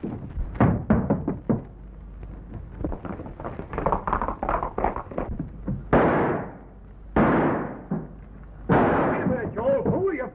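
Gunfire in a film shootout: a quick run of sharp shots, then three heavier blasts about six, seven and nine seconds in, each with a long fading tail.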